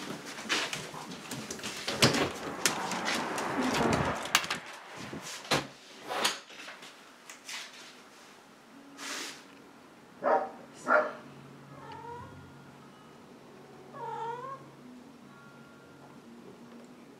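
Long-haired domestic cats meowing: several short calls in the second half, one around ten seconds, one around eleven seconds and another near fourteen, with small chirps between them. Knocks and rustling fill the first few seconds.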